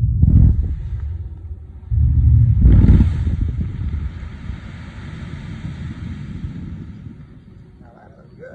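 Buried blasting charges detonating to excavate a canal. The deep boom of one blast rumbles on, a second blast goes off about two seconds in, and the sound fades as a long rumble over several seconds.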